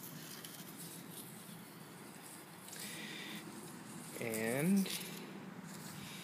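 Faint background with one short, drawn-out hesitation sound from a man's voice, like an "uh", about four seconds in.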